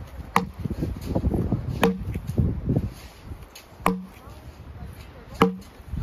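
Axe bucking a log: four chopping strikes into the wood about one and a half to two seconds apart, each a sharp crack with a brief ringing note.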